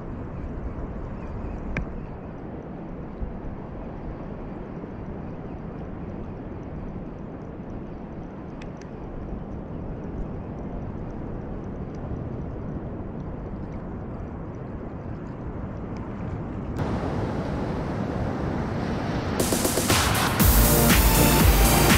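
Spinning reel being wound, with a steady rough grinding from a bearing in the handle knob that has been greased but has not yet quietened. Near the end it gives way to louder surf.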